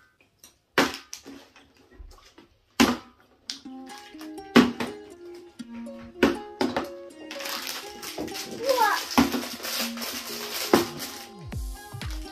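A plastic water bottle being flipped and landing on a marble tabletop: sharp knocks every second or two. Background music with a steady melody comes in about four seconds in.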